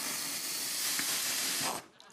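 Cartoon sound effect of lighter fluid spraying from a squeeze bottle onto a barbecue grill: a steady hiss that cuts off shortly before the end.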